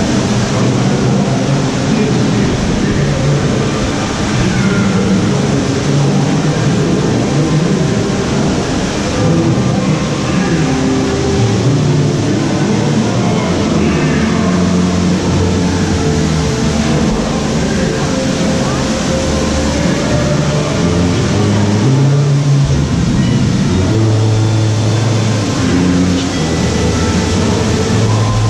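Water dark ride's show soundtrack playing loudly: music with held notes that change pitch, mixed with voices and effects, over a steady rushing noise.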